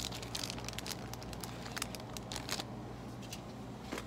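Crinkly plastic snack bags being handled off a store shelf, a run of short rustles and crackles over a steady low hum.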